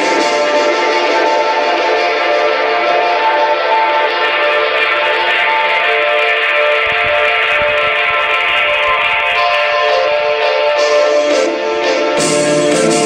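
Instrumental electronic hip-hop beat played live from a laptop and pad controller: sustained synth chords, with low drum hits coming in about seven seconds in.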